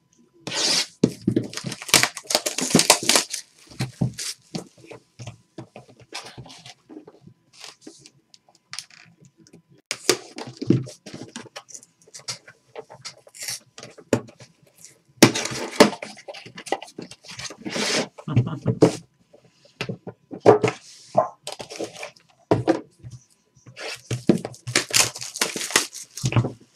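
Clear plastic wrapping crinkling and tearing, with cardboard scraping and light knocks, as a sealed trading card box is opened by hand. It comes in irregular bursts, loudest about 2–3 s in, around 15–19 s and near the end.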